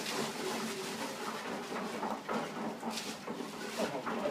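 Ice being tipped from plastic bags into a steel cement mixer drum: rustling of the bag, with a sharp clatter about three seconds in and another just before the end, over a faint steady hum.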